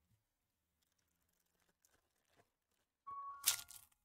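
Near silence, then about three seconds in a foil trading-card pack wrapper is torn open: a short crinkly rip with a brief squeal.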